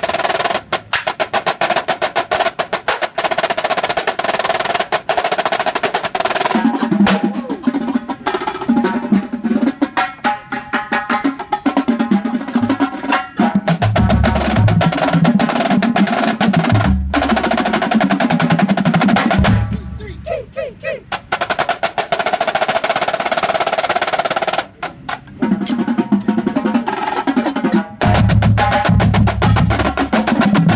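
A drum corps battery of Yamaha marching snare drums playing a fast, dense rehearsal passage of rolls and rudiments in unison. Deep bass drum hits join in about halfway through and again near the end, with a short break in the playing about two-thirds of the way through.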